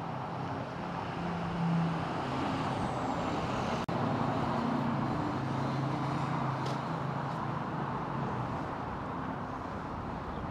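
Street traffic: a motor vehicle engine running with a low, steady hum over road noise. The sound drops out for an instant about four seconds in.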